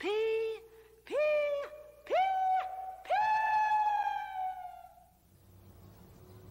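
A voice singing "P" on four held notes, each higher than the last. The fourth note is held longest, about two seconds, and fades out near the end.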